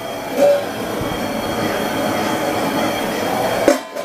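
Steady rushing roar of a homebrew kettle on its burner as the wort heats, almost to a boil. A short pitched sound comes about half a second in, and a sharp click just before the end.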